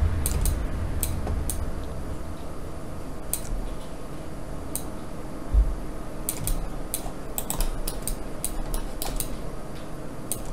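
Irregular clicks of a computer mouse, some in quick runs, over a steady low rumble, with a single low thump about halfway through.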